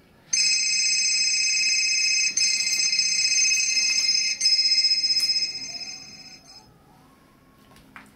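Mobile phone ringtone: a high, trilling electronic tone starts suddenly, rings for about six seconds with two brief breaks, then fades out.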